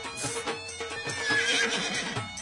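Upbeat folk-style dance music with a steady beat. About a second in, a loud, wavering high-pitched cry rises over the music for most of a second.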